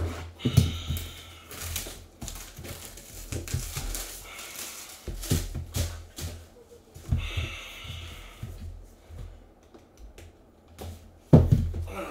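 Plastic shrink-wrap being cut and pulled off a cardboard trading card box: crinkling and tearing in two short stretches, amid small clicks and taps of hands and the box. A louder knock comes near the end.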